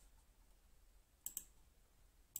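Two quick computer mouse clicks, a split second apart, about a second and a quarter in, against near silence.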